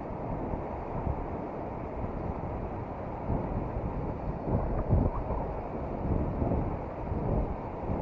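Rushing river rapids, with wind buffeting the microphone. A few dull thumps come around the middle, the loudest about five seconds in.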